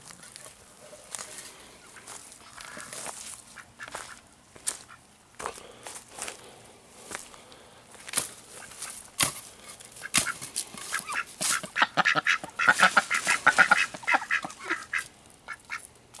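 Pekin ducks quacking and chattering while they forage, with scattered short clicks. A quick run of quacks builds about ten seconds in and is the loudest part before it trails off.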